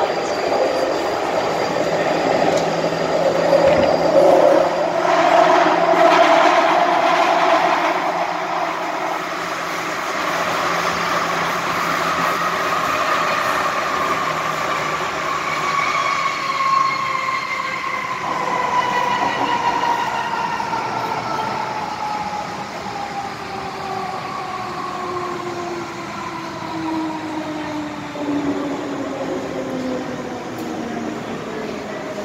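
MTR M-Train electric multiple unit running through a tunnel, wheel and rail noise heavy at first. Then its traction motors give a whine that falls steadily in pitch as the train brakes to a stop at a station.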